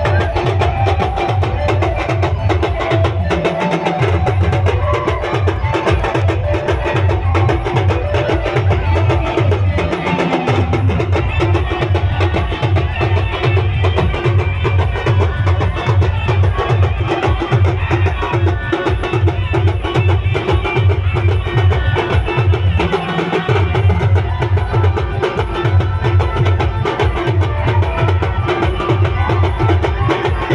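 Band music built on a fast, loud drum loop: dense, rhythmic drumming with deep bass beats. The bass drops out briefly three times, about three, ten and twenty-three seconds in.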